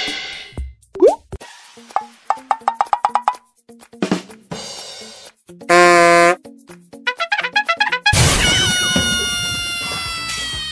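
Comedy sound effects laid over light background music: a quick rising glide about a second in, a run of short plucked notes, a brief loud flat buzzing tone around six seconds, and a long ringing tone that slowly slides down in pitch from about eight seconds.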